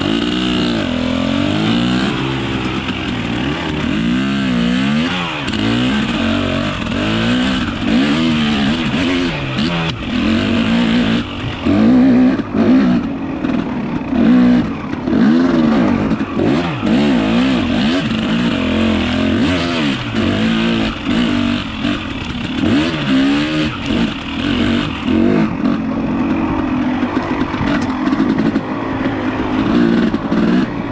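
Dirt bike engine being ridden hard, revving up and down continuously, its pitch rising and falling about once a second as the throttle is worked.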